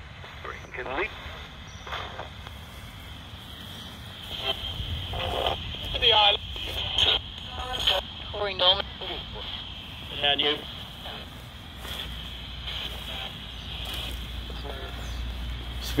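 Handheld radio sweeping through stations as a 'spirit box': short chopped fragments of broadcast voices, a few scattered syllables at a time, over steady static hiss and frequent clicks from the sweep.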